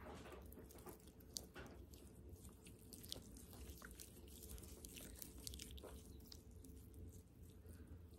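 Faint, scattered wet clicks and squishes of watery slime being squeezed and stretched between the fingers, over a low room hum.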